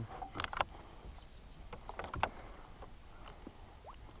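A few light knocks and clunks in a canoe as gear is handled over the side, over faint background noise. Two come close together about half a second in, and the sharpest comes just after two seconds.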